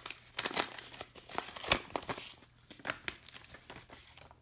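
A paper envelope being torn open and handled: dry crinkling and tearing of paper in quick crackles, thickest over the first two and a half seconds, then sparser.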